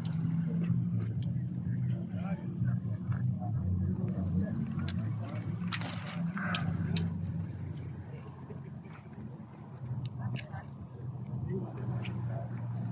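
A steady low engine hum from a road vehicle, with scattered talk from a crowd of onlookers over it.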